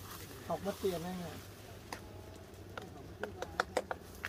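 Durian fruit on the tree being tapped with a small hand tapper to judge its ripeness by ear: faint, sharp knocks, a couple spaced out at first, then a quicker run near the end.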